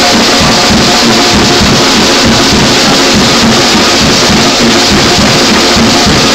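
A live band playing loud instrumental music: busy drum kit and hand-played congas with a guitar, steady with no break.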